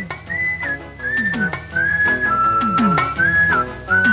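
A slow tune whistled in a few held notes that step down in pitch, over background music with drum strokes whose pitch falls.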